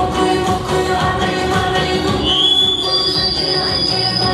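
A woman singing a pop song into a microphone over amplified band accompaniment. A high held note comes in about halfway through.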